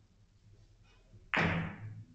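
A cue tip striking the yellow cue ball on a carom billiards table: one sharp knock about a second and a half in, dying away quickly in the room.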